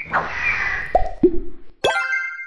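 Cartoon sound effects for an animated logo: a swishing noise, two quick pops sliding upward in pitch about a second in, then near the end a sharp hit followed by a bright ringing chime that fades away.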